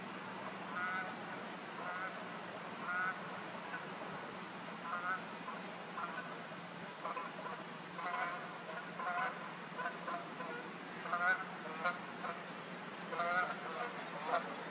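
Short, pitched bird calls repeated at uneven intervals, about once a second, with the loudest run in the last few seconds.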